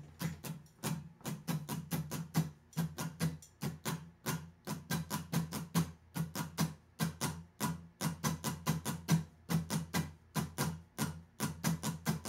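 Acoustic guitar strummed in a steady, even down-and-up rhythm of about four to five strokes a second, switching between A2 and C major 7 chords.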